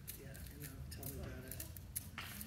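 Indistinct voices talking, with a scattering of short, sharp clicks over them.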